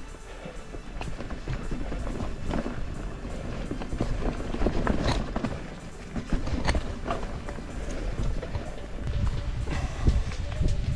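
Hardtail mountain bike on tubeless Maxxis tires being ridden along a dirt singletrack: tires rolling over dirt, leaves and roots, with irregular clicks and knocks from the bike rattling over bumps and a low rumble of wind on the microphone.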